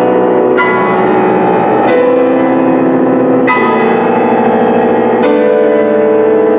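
Grand piano played solo: four struck chords, about one every one and a half seconds, each left ringing until the next.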